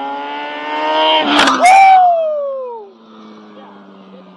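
A motorcycle passing at speed, which an onlooker takes for a 600. Its engine note climbs in pitch as it approaches, is loudest about one and a half seconds in, then drops in pitch and fades as it rides away.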